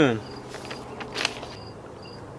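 Crickets chirping in short, high, repeated chirps against the outdoor background, with a brief rustle a little after a second in.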